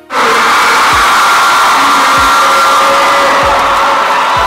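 A loud, steady crowd roar and cheering in a packed gymnasium, over music with a heavy kick-drum beat about every second and a quarter. The roar starts suddenly at full strength.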